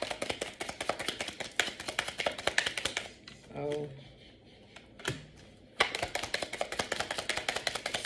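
Deck of tarot cards being shuffled by hand, a rapid patter of cards dropping and slapping together. The shuffling runs for about three seconds, stops for a short hum and a single tap, then starts again about six seconds in.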